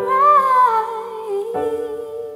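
A soft female voice sings a long, wavering note, the word 'alright' of the song's lyric, over a gentle piano accompaniment. A new piano chord comes in about one and a half seconds in.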